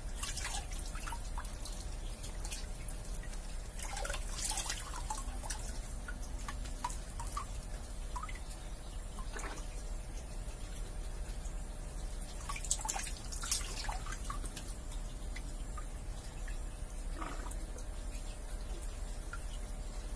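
Pond water dripping and splashing in small, irregular bursts as hands and a plastic mesh basket scoop through shallow water, over a steady low hum.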